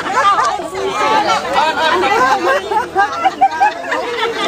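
Speech only: several women chatting, voices overlapping in lively conversation.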